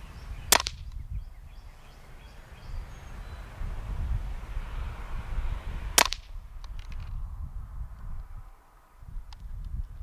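Two sharp cracks from a suppressed Ruger 10/22 firing subsonic .22 LR, about half a second in and again about six seconds in, the second followed by a few faint clicks. A low rumble runs underneath.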